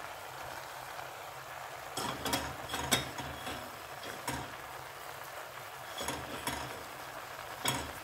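Wooden spoon knocking and scraping against a stainless steel pot as chunks of raw taro and pork are turned over, in irregular clacks starting about two seconds in.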